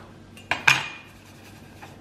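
Steel cleaver knocking on a wooden cutting board: two sharp knocks about half a second in, the second the loudest with a brief metallic ring from the blade.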